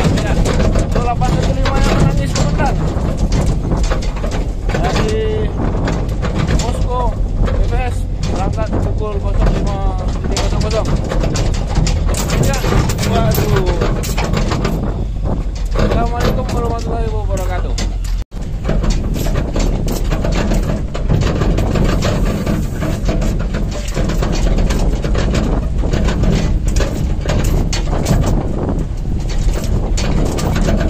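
Engine and road noise of a moving truck heard from its open cargo bed, a steady low rumble with wind buffeting the microphone, and indistinct voices over it in the first half.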